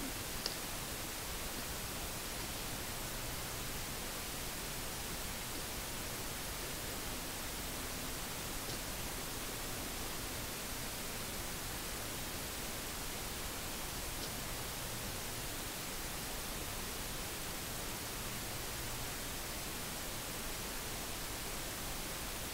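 Steady, even hiss of the recording's own noise floor, with one faint click about half a second in.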